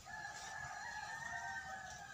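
A rooster crowing once, one long crow of about two seconds.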